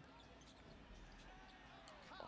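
Near silence, with the faint sound of a basketball game broadcast: a ball bouncing on a hardwood court.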